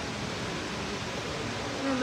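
Steady background hiss and hum with no distinct events.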